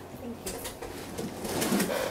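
Sheets of paper being handled and shuffled with a light rustle, and a low murmured voice about three-quarters of the way through that is the loudest part.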